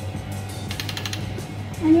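A socket ratchet clicking in a quick run of under half a second, about a second in, as the oil drain plug is snugged down, over background music.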